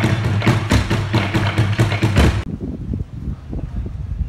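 Burundian-style drum troupe beating tall wooden standing drums with sticks in a fast, even rhythm of about four to five deep strokes a second. The drumming cuts off suddenly about two and a half seconds in, leaving only a quiet low background rumble.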